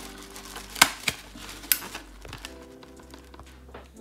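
Handheld desk stapler clicking as staples are driven through crumpled tissue paper into a paper cone: one sharp loud click about a second in, followed by a couple of lighter clicks.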